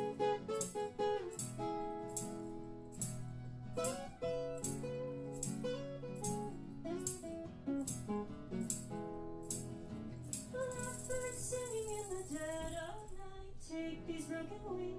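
Live acoustic music: women's voices singing over a strummed acoustic guitar, with a tambourine struck about twice a second and briefly shaken in a hiss near the end.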